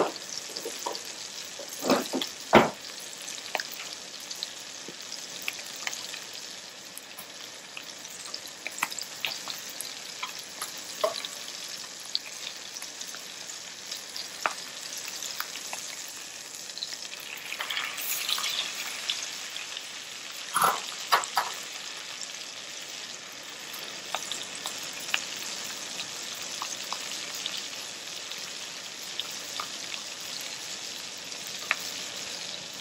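Hare loin and round slices sizzling in fat in a stainless steel frying pan: a steady hiss with constant small crackles and spits, busier for a couple of seconds when the meat is turned midway. A few sharp clicks stand out, the loudest about two seconds in and another near the two-thirds mark.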